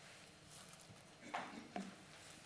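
Two short clicks, about half a second apart, over faint room tone.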